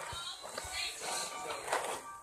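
Background voices with music playing under them, quieter than the talk around this moment.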